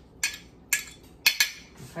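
A metal utensil clinking against a ceramic bowl and a clear dish as mushed gelatin is scraped into dog food: about four sharp clinks, two of them close together in the second half.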